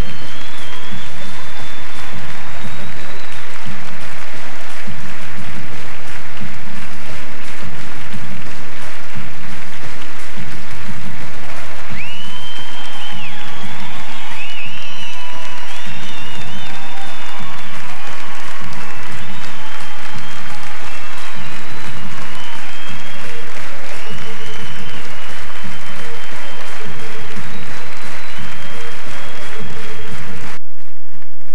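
A large theatre audience applauding and cheering over music with a steady bass line, with long, high whistling tones now and then.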